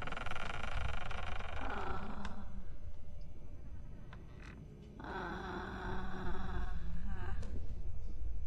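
A fly buzzing in two spells, the first lasting about two seconds and the second starting about five seconds in, over a low background rumble.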